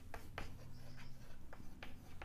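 Chalk scratching and tapping on a blackboard as words are written out, in short irregular strokes, a few per second.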